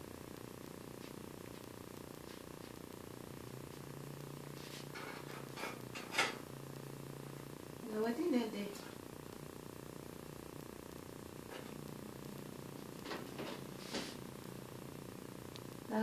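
Steady low hum of room or appliance noise, with a few sharp clicks and knocks and a brief wordless voice sound about halfway through.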